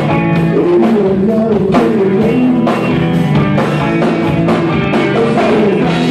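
Live garage rock band playing: Farfisa organ, electric guitar, bass guitar and drum kit, with a sung vocal over a steady drum beat.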